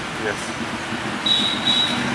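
Steady background noise, with a short spoken "yes" at the start. A thin high steady tone comes in a little after halfway and is briefly broken once.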